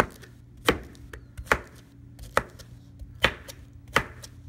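Chef's knife chopping pineapple into chunks on a plastic cutting board: about five sharp knocks of the blade through the fruit onto the board, a little under a second apart.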